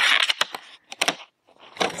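Paper rustling as a hardback book's dust-jacketed cover and front pages are turned by hand, with a few sharp clicks and taps in the first second.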